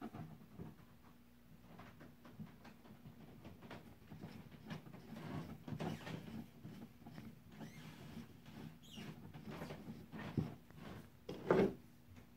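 3/8-inch steel threaded rod being twisted by hand into a tight, epoxy-coated hole in a wooden handle: faint, irregular scratching and scraping of the threads against the wood. Two short knocks near the end.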